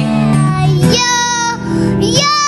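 Live music: acoustic guitar chords under singing. About a second in, a child's voice glides up into a high held note.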